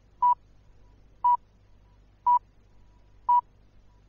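BBC Greenwich Time Signal "pips": four short, pure beeps at about 1 kHz, one second apart, counting down to the hour on the radio.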